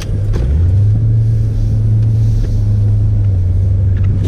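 Car engine droning steadily, heard from inside the cabin while driving; its low note rises a little about half a second in, then holds.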